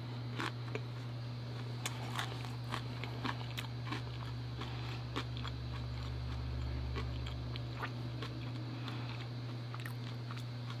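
A person chewing a mouthful of food close to the microphone, with small crunchy clicks scattered throughout, over a steady low hum.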